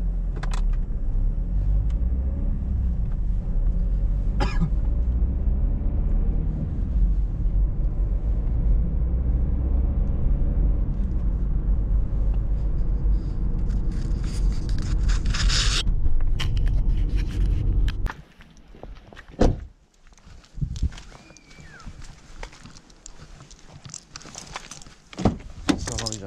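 Car driving, heard from inside the cabin: a steady low engine and road rumble. About 18 seconds in it stops abruptly as the car is switched off, and a few sharp clicks and knocks follow in the quiet, one loud one shortly after the stop.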